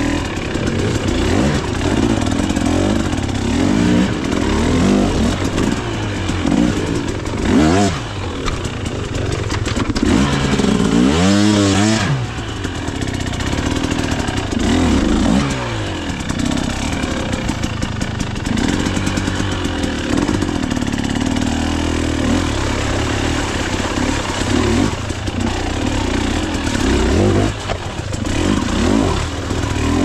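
Off-road dirt bike engine, heard close up from the rider's own bike, revving up and down again and again on the throttle as it picks its way over roots and mud. There is a sharp blip of revs about eleven seconds in.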